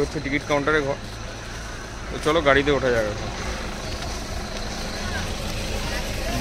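A steady low engine rumble, with voices talking over it near the start and again around two to three seconds in.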